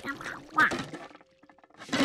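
A cartoon monkey's chattering vocal call, its pitch gliding up and down, lasting about the first second.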